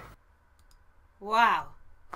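Music playback cuts off abruptly right at the start, leaving near silence with a few faint clicks. About a second and a quarter in, a person gives a short wordless exclamation with falling pitch.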